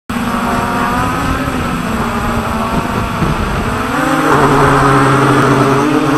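Multirotor drone's electric motors and propellers whining steadily in flight, with wind rumble on the onboard microphone. About four seconds in, the motor tone changes pitch and grows louder.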